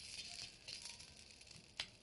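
Faint crackling of hot oil around charred biscuits in a shallow iron pan. A few sharp clicks come through it, the loudest near the end, as a steel spoon touches the biscuits and the pan.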